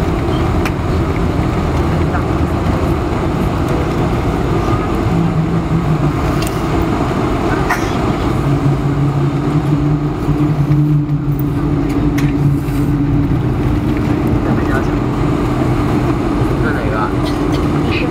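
Boeing 747 jet engines and rolling noise heard inside the cabin as the airliner slows on the runway after touchdown, spoilers up: a loud, steady rumble with a few short rattles. A steady hum comes in about halfway through.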